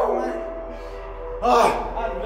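Men's excited yelling: a falling cry that trails off at the start, then a loud gasping shout about one and a half seconds in, with music playing faintly underneath.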